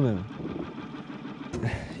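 Suzuki outboard motor running quietly at low speed, a faint steady hum.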